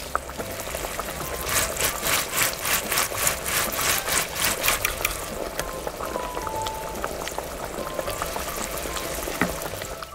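Thick tomato sauce cooking in a small metal wok, popping and bubbling in quick regular bursts from about a second and a half in, then settling to a quieter bubbling.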